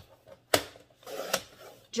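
Paper trimmer being set on a sheet of cardstock: a sharp plastic click about half a second in, a rustle of paper and a second click a little past one second, then soft handling.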